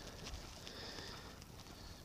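Faint outdoor background noise in a pause between speech, with no distinct event.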